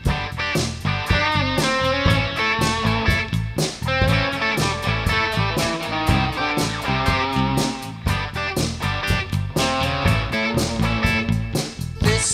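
Rock song instrumental: an electric guitar plays melodic lines over bass and a steady drum beat.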